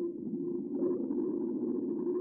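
Quiet background music: a soft, low sustained tone with faint movement above it.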